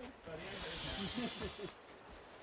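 A person blowing into an inflatable by mouth: one long breathy rush of air lasting about a second and a half.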